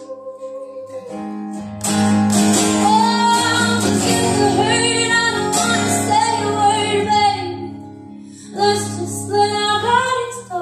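Live acoustic country song: a woman singing over strummed acoustic guitars. The music is quieter for the first couple of seconds, then the voice comes in loud and full, eases briefly near the end, and returns.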